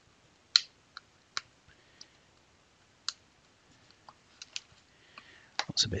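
Irregular small clicks and snaps of a cracked plaster cast chipping as a metal sculpting tool is pushed into its cracks and bits break off. The first, about half a second in, is the loudest.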